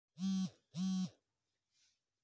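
Two short, identical steady low tones about half a second apart, each lasting about a third of a second.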